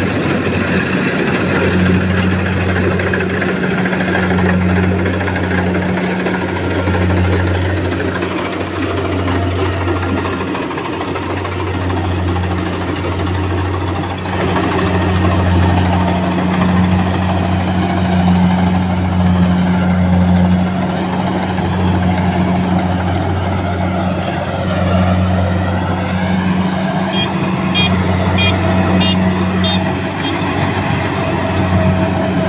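Kubota DC-68G Harvesking combine harvester's four-cylinder turbocharged diesel engine running under load as the machine cuts and threshes rice, a loud steady drone with a low hum that swells and eases slightly.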